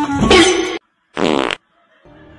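Two loud fart-like blasts. The first lasts about three-quarters of a second. After a moment of dead silence comes a shorter, fluttering one, in the manner of an edited-in comedy sound effect.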